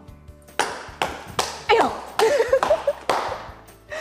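About seven sharp taps in an even rhythm, roughly two a second, one with each step of a seven-step walk, with music under them.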